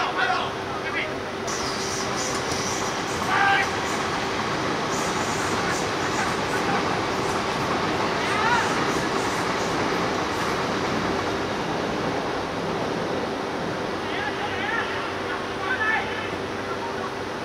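A passing train rumbles and rattles steadily behind a football pitch, its high rattle fading out about ten seconds in. Players shout short calls every few seconds over it.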